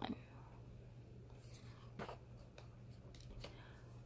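Picture-book page being turned: a faint paper rustle about a second and a half in, then a short flick of the page about two seconds in, with a softer touch later on.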